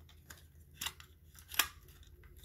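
Small clicks and paper rustles from handling a cassette case and its folded paper insert, with the sharpest click about one and a half seconds in.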